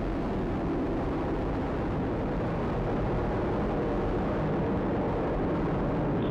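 Atlas V 541 rocket in powered ascent, about twenty seconds after liftoff: its RD-180 main engine and four solid rocket boosters make a steady, deep rumble with no pauses or changes.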